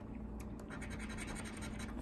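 A coin scratching the latex coating off a paper scratch-off lottery ticket. It is a quick run of short scrapes, uncovering one play spot on the ticket.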